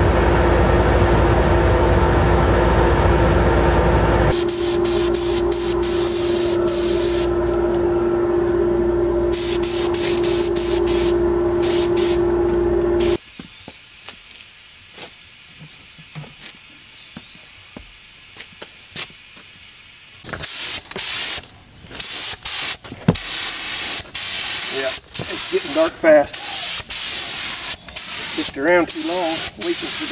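A steady machine hum with a constant tone, joined after about four seconds by the hiss of an aerosol spray can. After a quieter stretch, a gravity-feed paint spray gun hisses in many short on-off bursts as it sprays paint.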